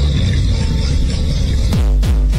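Electronic dance music with a heavy sustained bass. Near the end a downward sweep leads into a run of punchy bass kicks, each falling in pitch, about four a second.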